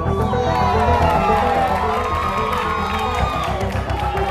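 Studio audience and contestants cheering and shrieking over background music with a steady bass beat. The cheering breaks out at once, with high whoops that rise and fall.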